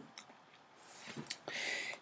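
Mostly quiet room tone, with a few faint clicks a little over a second in and a short soft breath-like hiss just before the end.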